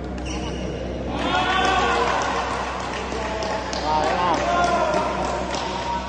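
Badminton rally: a string of sharp racket strikes on the shuttlecock and other quick knocks on the court, with players' voices calling out over them.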